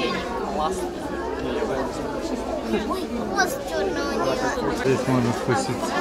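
Crowd chatter: many visitors, children among them, talking over one another at once in a crowded indoor gallery.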